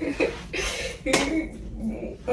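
Women's voices in short bursts, with one sharp clack about a second in.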